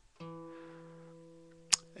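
A single low note plucked on an acoustic guitar, the high E that tops a bass walk in E, ringing and slowly dying away. A sharp click near the end.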